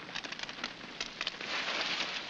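Fire crackling, with a hissing rush that swells about a second in as a hydrant valve is turned on and water runs through the hose.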